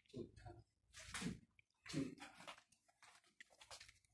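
Faint, brief murmurs of speech in a quiet small room.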